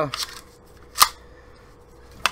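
Stevens 320 12-gauge pump-action shotgun being handled at its slide-action release: a brief rustle, then one sharp click about a second in.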